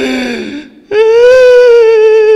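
A man wailing close into a handheld microphone. A short cry falls in pitch, then about a second in a long, high wail is held steady.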